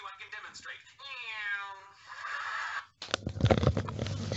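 A sitcom clip played from a computer screen's speaker and picked up by a nearby microphone: a man's voice does a drawn-out, pitch-gliding 'neeeow' imitating the Doppler shift of a passing car, about a second in. Knocks and rustling of the microphone being handled follow near the end.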